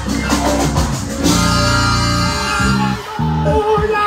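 Live Latin dance band playing loudly, with congas and bass guitar: a held chord from the band about a second in, then the bass breaks into separate low notes near the end.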